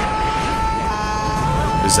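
Film soundtrack: one long held high note with overtones, steady in pitch, over a low rumble of background noise.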